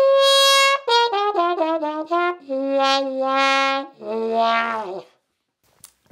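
Trumpet played with a rubber sink plunger worked over the bell for a wah-wah effect. A long high note is followed by a quick falling run of short notes, then two lower held notes whose tone brightens and darkens as the plunger opens and closes. The last note sags in pitch and stops about five seconds in.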